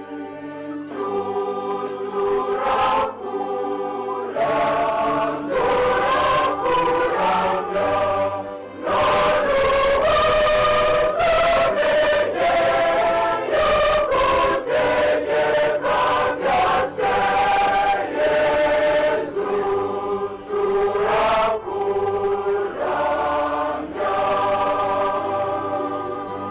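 Church choir singing a hymn of thanksgiving in several parts, in sustained phrases with short breaks between them, growing fuller and louder about nine seconds in.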